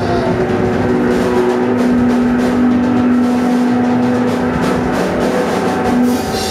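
A rock band playing live: a drum kit being struck and electric guitars, with one long held note ringing through the middle.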